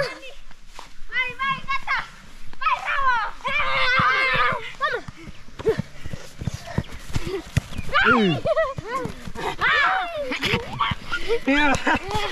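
Children shouting and calling out during a rugby game, with one long loud yell a few seconds in, and scattered short knocks of running feet on grass.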